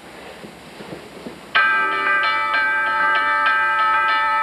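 High school concert band starts playing about a second and a half in: a sudden loud entry of sustained notes, moving from note to note in a steady rhythm. Before that, a quiet hall with a few faint shuffles.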